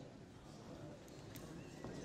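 Faint room tone of a large parliamentary chamber, with low murmur of voices and a couple of light knocks or clicks, one in the middle and one near the end.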